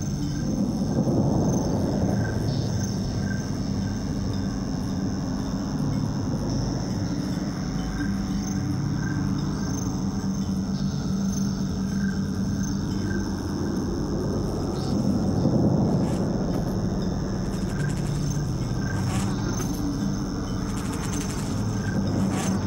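Slow ambient background music with low sustained notes that shift every second or two, and a steady high tone above them.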